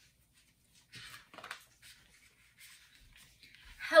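Pages of a picture book being turned: two short paper rustles about a second in, then a few fainter rustles.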